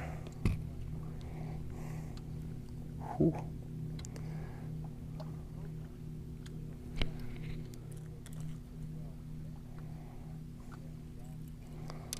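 Boat motor idling with a steady low hum, with a few short knocks and clicks from handling over it, the loudest about three seconds in.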